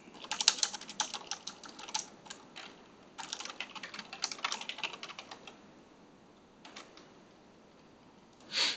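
Computer keyboard being typed on: two quick runs of keystrokes with a short pause between, then two single keystrokes near the end.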